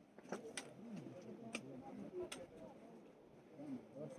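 Hikers passing on a rocky path: sharp, faint clicks of trekking-pole tips and steps, four distinct ones within the first two and a half seconds, under faint low voices.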